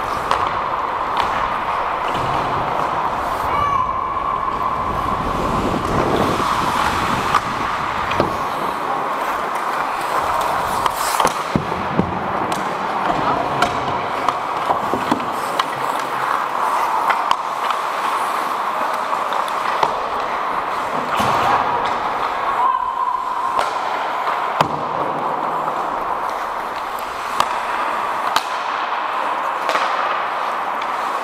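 Ice hockey play heard up close on the ice: a steady scraping hiss of skate blades on ice, broken by many sharp clacks of sticks and puck striking each other and the boards.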